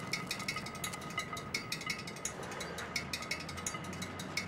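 Rapid, uneven mechanical clicking and ticking, several clicks a second, over faint steady high tones.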